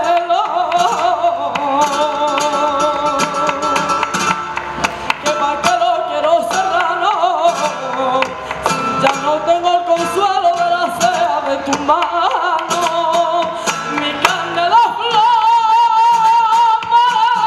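A female flamenco singer sings a slow, heavily ornamented line, her held notes wavering and sliding between pitches, over guitar accompaniment with sharp strums. Near the end she rises to a long, high, wavering held note.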